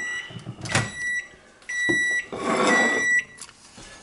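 Microwave oven's finished-cycle beeps: a steady high tone about half a second long, repeating roughly once a second. A sharp click and some scraping come between them as the door is opened and the plastic pie tray is pulled out.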